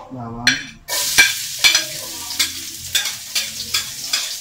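Chopped vegetables hitting hot oil in a steel wok on a gas burner: a loud sizzle starts about a second in, and a metal spatula scrapes and clanks against the wok about twice a second as the food is stirred.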